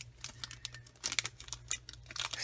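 Irregular light clicks and crinkles of a plastic ATC card holder being handled and pressed between the fingers, over a low steady hum.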